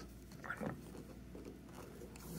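Faint rustling and scraping of a metal loom hook pulling chunky yarn through the loops on a plastic 12-peg loom, with a slightly louder scrape about half a second in.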